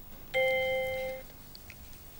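A steady electronic tone from a quiz-show word board, held for just under a second, as the contestant's called word drops into place in the sentence grid.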